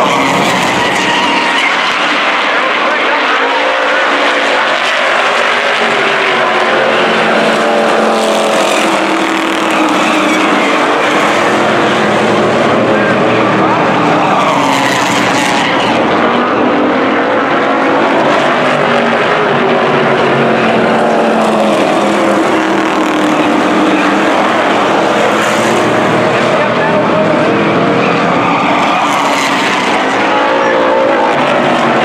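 A pack of street stock race cars running at speed around an oval track, their engine notes rising and falling as they come through the turns and pass.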